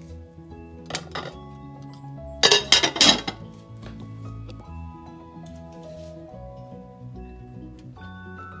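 A glass lid clinking onto the stoneware crock of a Crock-Pot slow cooker: a light clink about a second in, then a louder clatter of several quick knocks as it settles on the rim, over background music.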